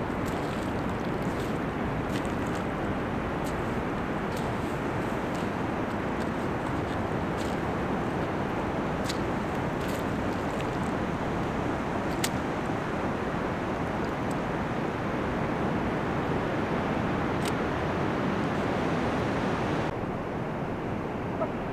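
Steady wash of ocean surf on a wide, flat beach, with faint, sharp ticks scattered through it.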